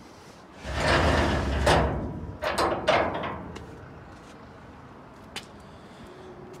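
Steel grate-style trailer ramps sliding in their under-bed storage rack: a long metal-on-metal scrape, followed by a few clanks as they shift and settle.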